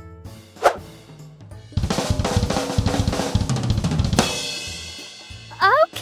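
Drum kit played in a fast fill of snare and bass drum strokes with cymbals, after a single stroke just before it; the cymbal rings on and fades out after the fill stops.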